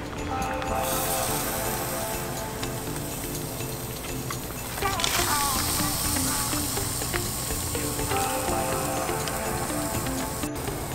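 Background music with a steady beat of held notes, over a high sizzling hiss of lobster tails cooking on a small gas grill that starts about a second in and grows louder around the middle.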